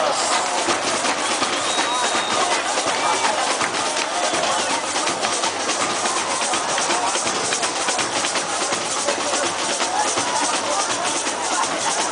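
Live folk percussion: a drum ensemble with large bass drums playing a dense, steady rhythm, with voices singing or shouting over it.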